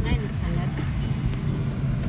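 Steady low rumble inside a Honda compact car's cabin as it drives slowly, with a person's voice heard briefly at the start.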